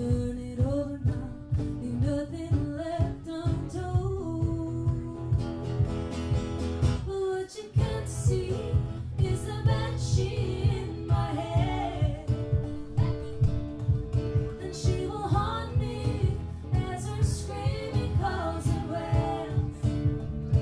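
Live acoustic music: women singing over a strummed acoustic guitar, with a hand-held frame drum keeping a steady beat. The music drops out briefly about seven and a half seconds in.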